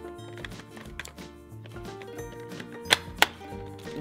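Light background music, with two sharp plastic clicks near the end as the stamper wheel is pressed onto the Play-Doh Mega Fun Factory playset.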